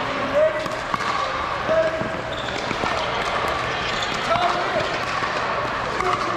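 Pickleball paddles hitting the ball in a rally: several short, sharp pops, the loudest about half a second, two seconds and four seconds in, over distant voices.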